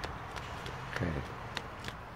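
Faint footsteps on asphalt: a few soft, irregular scuffs and clicks. About a second in, a man briefly says "okay".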